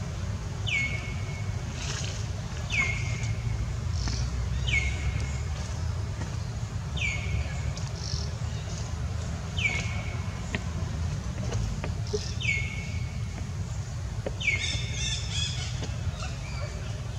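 A bird calling again and again: a short, high, downward-sliding note about every two seconds, seven times, over a steady low rumble.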